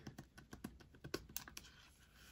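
Faint, irregular light clicks and taps of a glitter card sleeve and card being handled against a clear plastic binder pocket page, the loudest about a second in.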